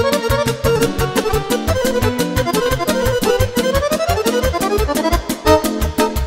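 Live band playing an instrumental passage of a Romanian folk-pop song: accordion leading over keyboard, guitar and a fast, steady drum beat, with a quick rising run in the melody a little past the middle.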